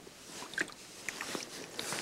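Faint water sloshing and small clicks as a landing net is lowered into a lake to release a fish, with a louder splash near the end.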